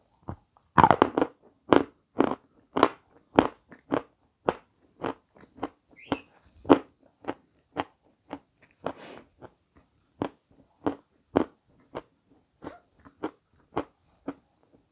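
Crunchy food being bitten and chewed close to the microphone: a louder bite about a second in, then steady crunching chews about two a second.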